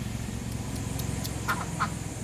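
Domestic duck giving a few short quacks about one and a half seconds in, over a steady low motor hum.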